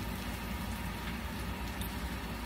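Steady low background noise with a low hum underneath, unchanging throughout.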